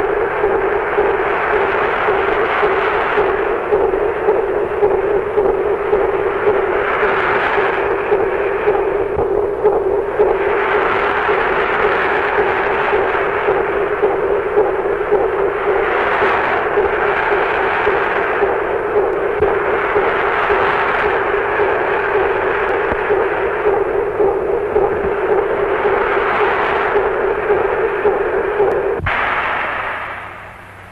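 A steady hum under a rushing noise that swells and ebbs every few seconds, cutting off abruptly about a second before the end: the ship's running noise on the bridge, on an early sound-film track.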